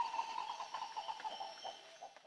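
Tropical forest ambience: birds calling over a steady insect drone, fading gradually toward the end.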